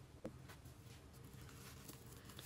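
Near silence: room tone with a low hum and one faint brief click about a quarter second in.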